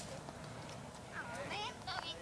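A toddler's high-pitched babbling: one short wavering vocal sound a little over a second in, and another starting near the end.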